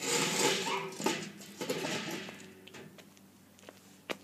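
Metal mesh patio table being lifted and set upright: metal scraping and clattering that starts suddenly and dies away after about two and a half seconds.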